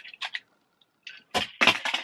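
Early Learning Centre magnetic plastic toy cars clicking and clacking against each other as the stack is pulled apart, with a sharper clack about a second and a half in, followed by a short laugh.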